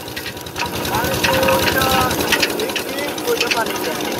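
Single-cylinder 'Peter' diesel engine running steadily, driving a sugarcane crusher, with a fast, even chugging beat. Voices are faint in the background.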